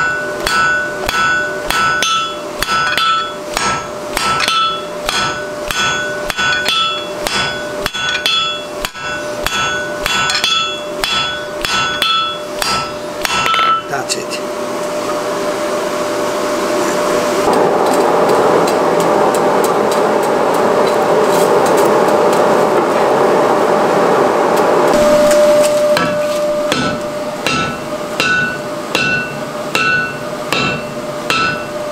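Hand hammer striking a red-hot mild steel bar on an anvil, drawing a taper. The blows come in a rapid, even rhythm, and each one leaves the anvil ringing. Midway the blows stop and a steady rushing noise builds for about ten seconds, then the ringing hammer blows start again near the end.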